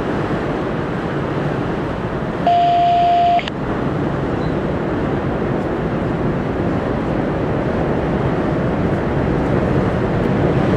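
Freight train of autorack cars rolling across a steel girder bridge: a steady rumble of wheels on rail. About two and a half seconds in, a single loud electronic beep, just under a second long, cuts in and stops abruptly.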